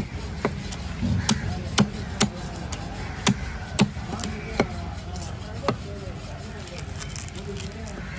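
A large cleaver-like knife knocking and scraping against a whole red snapper and the wooden chopping block as the fish is cut. There are about eight sharp, irregular knocks, most of them in the first six seconds.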